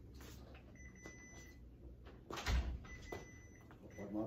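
An office door swinging shut with a single soft thud about halfway through, over quiet room tone.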